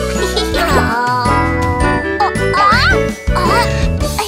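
Bright children's cartoon background music with tinkling, chime-like notes over a steady bass, and a few short squeaky rising-and-falling glides, the clearest about three seconds in.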